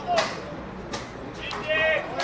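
Voices shouting across a football pitch: a short shout just after the start and a longer held call near the end, with a sharp knock about a second in.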